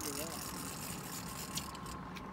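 Steady low rumble and hiss of a boat on open water, with a faint steady tone over it and a faint voice briefly at the very start.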